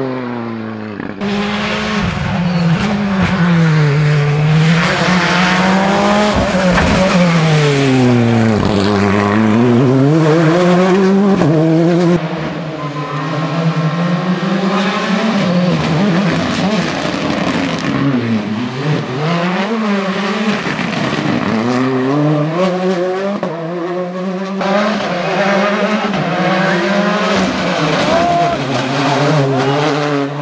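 Hyundai i20 N Rally2 rally car's turbocharged four-cylinder engine driven hard past, its note rising and falling again and again as it brakes, shifts and accelerates. Several separate passes are cut together, with sudden changes about one, twelve and twenty-five seconds in.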